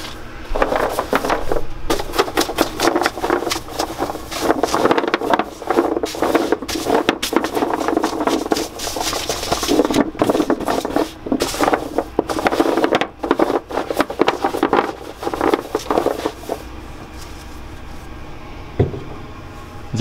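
A bristle brush sweeping cornstarch off hard raspberry cream centers on a tray: a dense run of scraping strokes with the centers clicking and rattling against each other. It dies down to a quieter, steady sound for the last few seconds.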